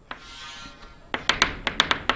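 Chalk on a chalkboard while drawing lines: a faint scrape, then from about a second in a quick run of sharp taps as the chalk strikes the board.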